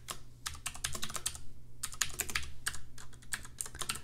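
Typing on a computer keyboard: a run of quick, irregularly spaced key clicks.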